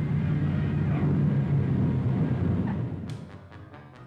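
Low, steady rumble of a twin-engine propeller transport plane coming in to land, fading away about three seconds in. Background music with short, quick percussive strokes then takes over.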